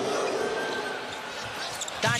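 Basketball being dribbled on a hardwood court over steady arena crowd noise.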